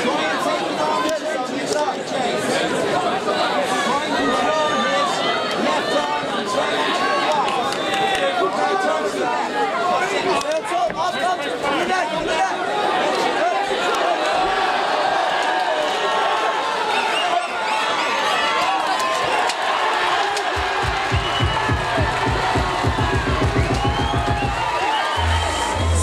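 Crowd of spectators shouting and cheering over music playing in the hall. A rapid pulsing bass comes in near the end.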